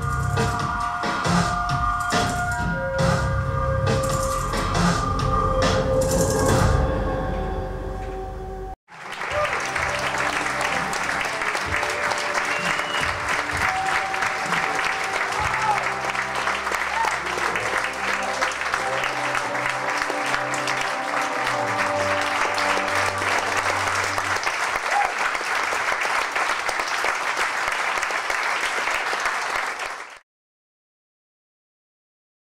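Music with a heavy low beat and drums that cuts off abruptly about nine seconds in. Then audience applause, with music playing underneath it, until it stops at the very end.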